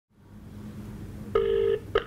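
Telephone ringback tone of an outgoing call, heard through a mobile phone's speaker: one ring pulse of about half a second a little past halfway through, then a short gap and the next pulse starting just before the end, the Australian double-ring pattern.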